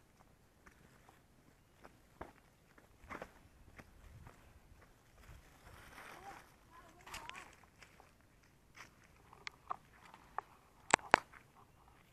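Footsteps and scattered clicks of a hand-held phone being carried while walking, with faint voices around the middle. Two sharp clicks near the end are the loudest sounds.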